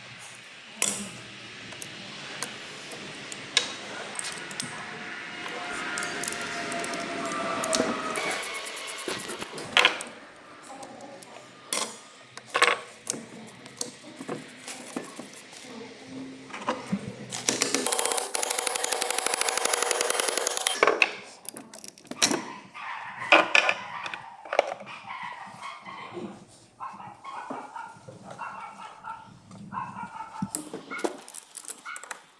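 Hand tools working on a Honda 110cc engine's split crankcase: scattered metal clinks and knocks, with a few seconds of rapid ratchet-like clicking a little past the middle.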